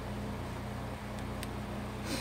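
A page of a handmade paper junk journal being turned by hand, giving a couple of faint paper ticks over a steady low hum.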